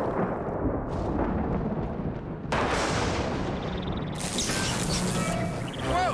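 Thunderstorm sound effects: a continuous low thunder rumble, with a sudden sharp thunderclap about two and a half seconds in and another crackling burst a couple of seconds later.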